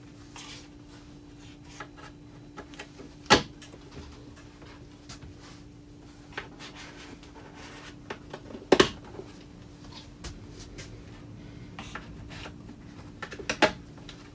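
Small black connector pegs being pressed by hand into the holes along the edge of an IKEA EKET flat-pack cabinet panel: two sharp clicks as pegs snap home, about three seconds in and again near nine seconds, with fainter taps and handling knocks between, over a faint steady hum.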